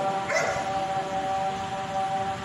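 A single short dog bark about half a second in, over background music holding steady tones.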